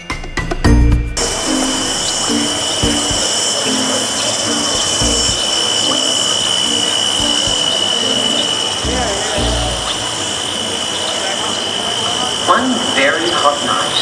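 Cicada chorus sound effect: a steady, shrill drone that cuts in suddenly about a second in and holds. Under it are a few low thumps and some soft low musical notes.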